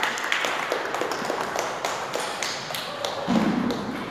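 Scattered sharp taps at an uneven pace, then a single heavy thud about three seconds in as a foot lands on the podium box.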